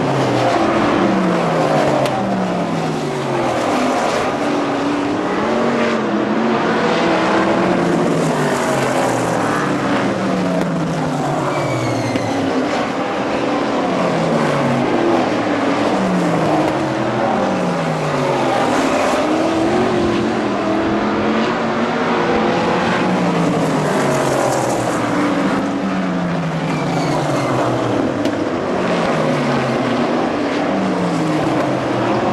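A field of winged sprint cars racing around the oval, their V8 engines running loud. The engine notes fall again and again, one car after another, as they lift off for the turns and go past.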